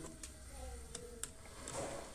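A few faint light clicks of hands handling the plastic housing of a Kyocera 3660/3860 developer unit and pushing a small wire connector into it.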